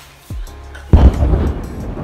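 A sudden loud boom like a bazooka shot about a second in, dying away over about a second, over background music.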